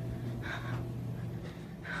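A steady low hum that stops about one and a half seconds in, with a short breath-like sound about half a second in.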